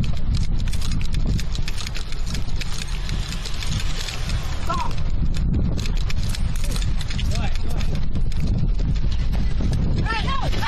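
Quick, rhythmic footsteps on asphalt as a police officer runs between cars, with wind buffeting the body-worn camera's microphone as a heavy rumble. A short shouted "Stop!" comes about five seconds in.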